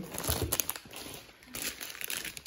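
Plastic bag wrapping around wax melt loaves in foil pans crinkling as the loaves are handled and set down, in two spells: one near the start and one near the end, with a soft knock early on as a loaf meets the stack.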